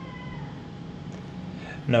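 A faint, drawn-out pitched call that glides down in pitch in the first half second or so, over a steady low hum.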